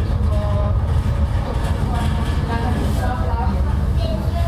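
Steady low rumble inside a moving aerial tramway cabin, the 150-person Gangloff cabin of a large reversible cable car, with indistinct passenger voices over it.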